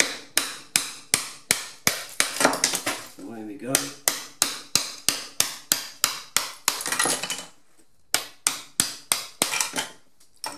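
A hammer striking a bolster chisel driven behind ceramic wall tiles, knocking the tiles off the wall. The blows come about three a second, stop for a moment about three-quarters of the way through, then start again.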